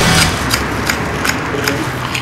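Table knife sawing through the crisp fried breading of a milanesa on a plate: a dense run of crunchy crackles and small snaps.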